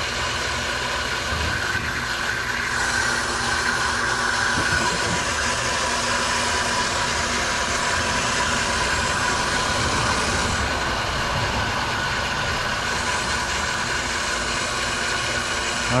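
Soft wash booster pump running steadily under load, with water spraying from the wand's nozzle in a steady hiss that grows stronger for several seconds in the middle.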